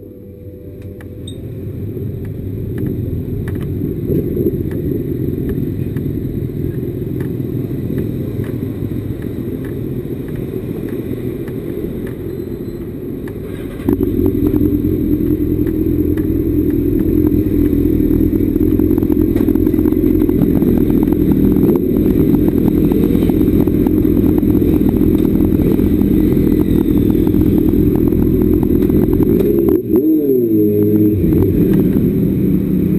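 Motorcycle engines idling: a steady low engine sound builds over the first few seconds, then jumps suddenly louder about halfway through and holds steady.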